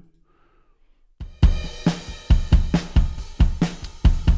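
Addictive Drums 2 virtual drum kit playing its 'Indie Rock' preset preview groove. After about a second of near silence, a rock beat of kick, snare, hi-hat and cymbals starts at about 137 beats a minute.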